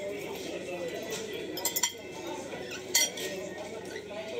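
Eating utensils clinking against a dish, a quick run of three clinks a little under two seconds in and one louder clink about three seconds in, over a murmur of background voices.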